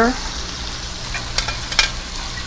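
Fish frying in hot coconut oil in a stainless steel sauté pan: a steady sizzle, with a few sharp clicks about a second and a half in.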